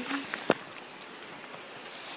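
Faint, steady outdoor hiss with a single sharp click about half a second in.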